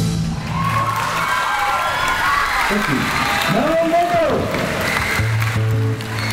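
A live rock band's closing chord stops and an audience applauds and cheers, with rising-and-falling whoops. A sustained low note from the band comes back in near the end.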